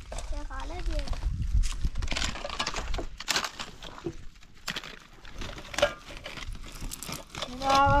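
Rubbish being handled: a woven plastic sack crinkling and rustling, with irregular clicks and knocks of hard plastic such as the crate. A child's voice is heard in the first second and a voice again near the end.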